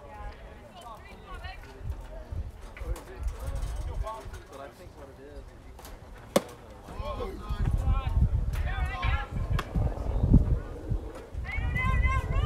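Faint voices of spectators chatting in the background. About six seconds in comes a single sharp pop as a pitched baseball smacks into the catcher's mitt.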